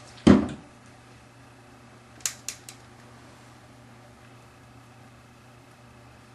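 Makeup tools and containers handled on a counter: a single loud thump just after the start, then three quick light clicks about two seconds in, over a steady low hum.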